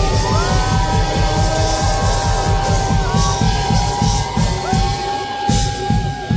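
Live indie rock band playing: a lead line holds long sustained notes that slide between pitches over a dense bass-and-drum rhythm, and the held notes drop away at the very end.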